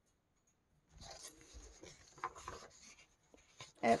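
Rustling and rubbing of a coloring book's paper page as it is turned and pressed flat by hand, starting about a second in, with a few sharper crinkles.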